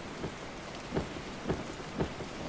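A steady hiss like rain, with a dull low thud about every half second.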